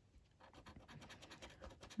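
Faint, quick scratching strokes of a thin metal tool on a lottery scratch card, rubbing off the silver coating, starting about half a second in.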